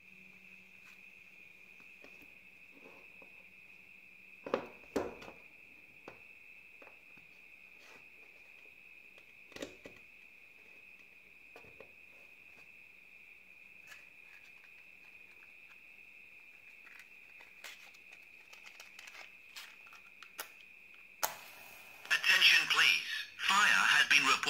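A faint steady high whine and low hum, with a few clicks and knocks from the wiring being handled and the USB plug going in. Near the end comes a short scratchy burst, like a match being struck. Then the Arduino fire alarm's small speaker starts playing its loud recorded voice warning, the sign that the flame sensor has detected the fire.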